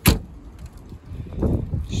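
A car door shutting with one sharp thud at the very start, followed by low shuffling and handling noise that grows louder toward the end as the phone is carried to the front of the car.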